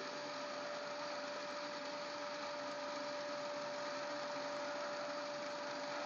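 DC shunt motor running steadily on a brake-test rig, with its brake drum loaded to about 5 amperes: a low, even hum with one constant whine in it.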